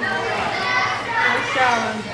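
Children's voices chattering and calling in a gym hall, high-pitched and overlapping.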